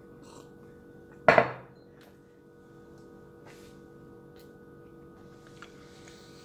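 Faint scattered ticks of someone eating brownies, over a steady low hum, with one loud, short sound a little over a second in.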